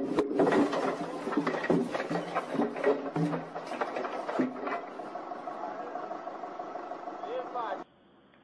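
Heavy logs knocking and clattering as they tumble off a forklift's forks, with people's voices over them; the sound cuts off suddenly near the end.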